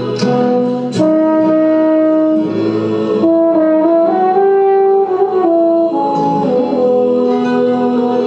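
Euphonium playing a slow hymn melody in held, connected notes.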